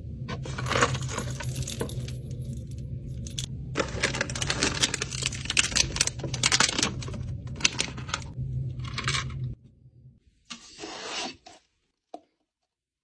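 Small hard trinkets clinking and rattling as a hand rummages through clear plastic storage bins and lifts items out. The clicks come in dense clusters over a low hum that stops near the end, followed by one short rustle.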